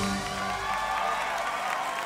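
A live band's final chord ringing out and fading after the song's last hit, with audience cheering and whoops starting to come in.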